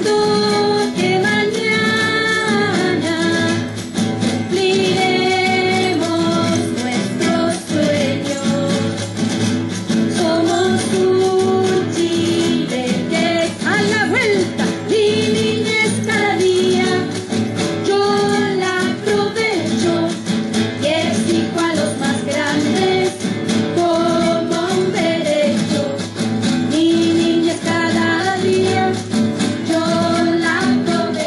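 Cueca music from a Chilean folk ensemble: voices singing a melody over instrumental accompaniment with a steady, quick rhythmic beat.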